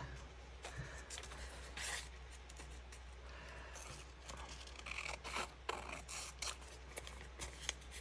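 Scissors snipping through an old book page in short cuts, a few at first and then a run of snips in the second half, with the paper rustling as it is handled.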